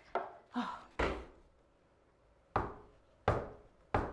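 Six sharp wooden knocks and taps at irregular intervals: three in quick succession in the first second, a pause, then three more.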